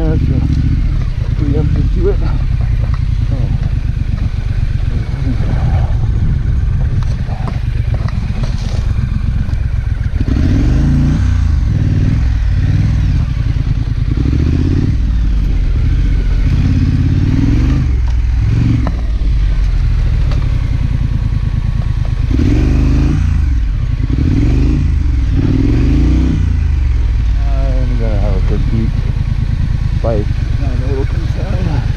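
2019 Triumph Scrambler's parallel-twin engine running as the motorcycle is ridden over a rough dirt trail, its revs rising and falling several times, most plainly in the second half.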